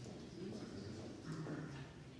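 Marker writing on a whiteboard: faint squeaks and light taps of the tip on the board as figures are written, with a short low murmur of voice in the second half.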